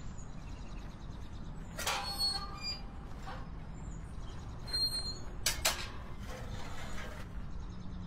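Quiet outdoor background with a few short bird chirps, and brief knocks and squeaks from a metal gate as a man climbs over it, the clearest about two seconds in and again around five and a half seconds.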